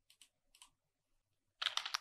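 Computer keyboard typing: a quick run of keystrokes near the end, after a few faint clicks.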